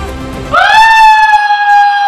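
Background music, cut about half a second in by a loud held tone that slides up in pitch and then stays steady.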